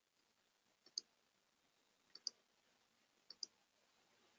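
Faint computer mouse clicks in near silence: a single click, then two quick double clicks, while a screen share is being stopped and restarted.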